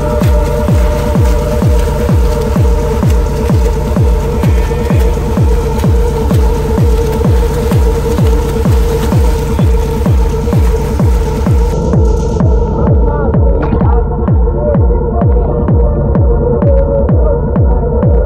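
Background electronic music with a steady, regular beat over a droning chord; about twelve seconds in the high end drops away, leaving a muffled beat.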